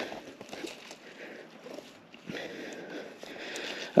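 Faint rustling and light ticks as a Himalo Boost 36 air suspension fork on a mountain bike is pushed down by hand to test its rebound. The fork returns slowly, which the rider puts down to low air pressure.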